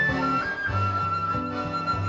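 Choro played by a trio of flute, piano accordion and nylon-string acoustic guitar: the flute carries the melody, a short higher note about half a second in and then one long held note, over accordion bass notes and chords and the guitar's accompaniment.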